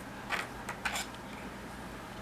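A few faint, light clicks of a metal knitting needle against a metal stitch holder as knitted stitches are slipped onto the holder.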